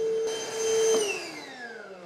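Milwaukee M18 cordless wet/dry vacuum running with a steady whine, then switched off about a second in, its motor winding down with a falling pitch.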